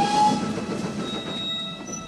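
Steam train sound effect: a locomotive and its coaches running along the track, the sound falling away towards the end.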